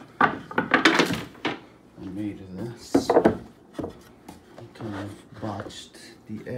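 Wooden cutting boards knocking and scraping against each other and the cabinet as one is pulled out of a narrow slot beside the counter: a burst of clattering in the first second and a half and another knock about three seconds in. Low speech runs between the knocks.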